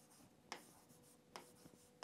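Faint taps of a stylus on a touchscreen whiteboard as a letter is written, two short ticks, over a faint steady hum; otherwise near silence.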